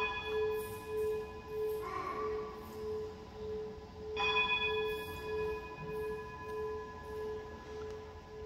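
A bell struck twice, about four seconds apart, to mark the elevation of the chalice at the consecration of the Mass. Each strike rings on, over a low note that wavers evenly about one and a half times a second.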